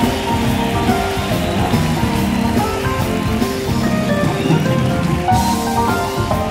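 Jazz-fusion band playing live in a direct soundboard mix: a dense, steady texture of sustained keyboard and guitar notes over electric bass and drums.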